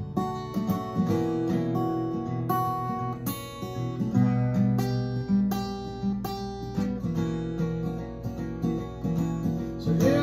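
Small-bodied acoustic guitar played solo, chords strummed in a steady rhythm with the notes ringing and changing every second or so.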